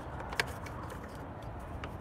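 Steady low outdoor background rumble with a sharp small click about half a second in and a fainter click near the end, from the plastic parts of a car side mirror and its adjuster handle being handled.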